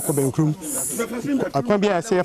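A man speaking, with two short, loud hisses within the first second.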